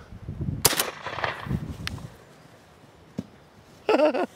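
A single shotgun shot fired into the air, sharp and loud, with a short echo after it. Two faint clicks follow later.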